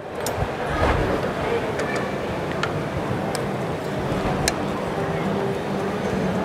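Steady background din of a busy hall with a low hum, broken by a few sharp light clicks of kitchen utensils, a spoon on a metal pan among them.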